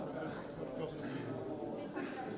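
Indistinct chatter from a group of people walking together, with light footsteps on a hard floor.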